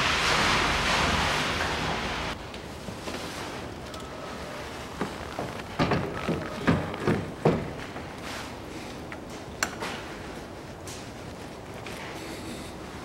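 Car battery being connected: short metallic knocks and clicks as the terminal clamps are fitted and tightened with a small wrench, clustered about five to seven seconds in, with a few single clicks later. A steady hiss in the first two seconds cuts off suddenly.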